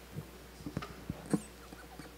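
Microphone handling noise: a handful of short bumps and scrapes as a handheld mic on a floor stand is gripped and moved, with the sharpest knock about a second and a half in.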